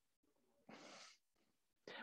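Near silence, with one faint, brief hiss a little under a second in.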